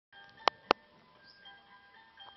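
Two sharp clicks about a quarter of a second apart, over a faint chiming tune.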